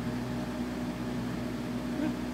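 A steady hum of a few even tones over an unbroken hiss, as from a running machine in the room.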